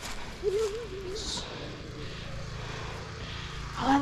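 A short murmured voice sound about half a second in. From about two seconds a faint, steady low engine hum from a vehicle some way off.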